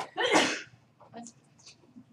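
A man coughs once, a short harsh burst near the start.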